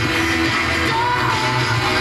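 A pop song with singing and a steady bass line, played from an FM radio broadcast through a loudspeaker.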